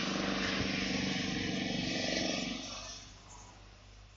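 A steady, low engine-like hum, like a motor vehicle running nearby, fading away about three seconds in.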